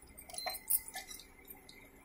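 Colocasia-leaf pakoras deep-frying in hot oil: a soft, irregular crackle of bubbling oil with scattered sharp pops, the clearest about half a second in and again shortly after.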